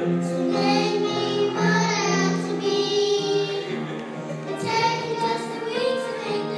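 A small group of young children singing a gospel song together into a microphone, holding sustained notes of the melody.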